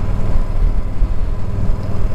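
2012 Yamaha V-Star 950's V-twin engine running steadily while the bike is ridden, a continuous low rumble.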